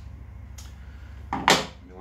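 A single sharp knock about one and a half seconds in: a hand tool or small metal part set down on the table saw's top, over a low steady hum.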